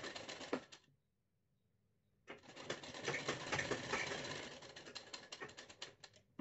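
Straight-stitch sewing machine running, a quick stream of needle clicks. It breaks off for about a second after the first second, then runs again.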